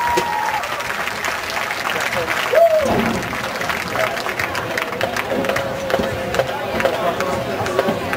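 Crowd in stadium stands clapping and cheering, with voices chattering through it and one loud shout about two and a half seconds in.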